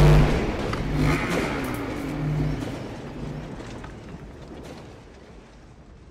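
Logo-reveal sound effect: a booming hit right at the start, then a rumbling swell with low pulsing tones that slowly fades away.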